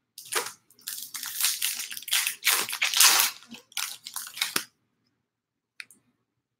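A foil baseball card pack wrapper, from a 2019 Topps Stadium Club box, being torn open and crinkled by hand. It is a dense, irregular crinkling that stops about four and a half seconds in.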